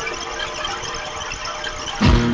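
A stream of white powder pouring from a hole in a tanker, making a steady grainy hiss, with faint music underneath.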